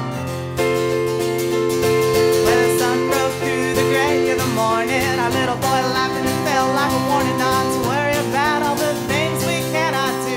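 Live acoustic folk music: a stage keyboard played with a piano sound, holding chords, with a woman singing over it from about two and a half seconds in.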